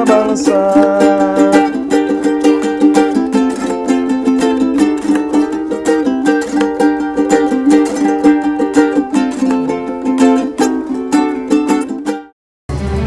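Four handmade ukuleles, built by the players from reused scrap wood, strummed together in brisk, even strokes, playing an instrumental passage of a song. The playing cuts off abruptly at the end.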